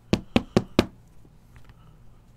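Four quick knocks in a row, about a quarter second apart, from cards being handled on a tabletop.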